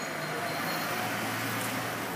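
A car driving slowly past along a narrow street, its engine running at low revs as a steady low hum, over the general noise of the street.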